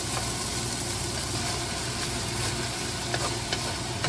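Ground beef sizzling steadily in a nonstick frying pan as shredded carrots go in, with a wooden spatula stirring in the last second or so.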